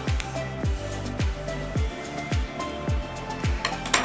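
Background music with a steady deep beat about twice a second under sustained tones.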